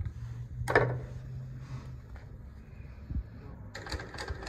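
A pair of scissors snipping thread once, a short sharp cut about two thirds of a second in, over a low steady hum; a small click follows near three seconds.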